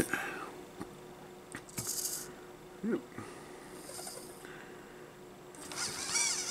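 The hobby servo motors of a 3D-printed EEzyBotArm 2 robot arm whir faintly in two short spells as the arm moves, with a few light clicks.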